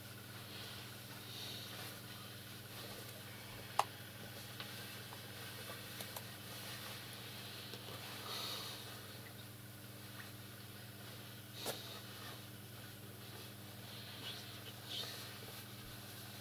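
Quiet room tone with a steady low electrical hum, broken by a few small clicks: a sharp one about four seconds in and a softer one near twelve seconds.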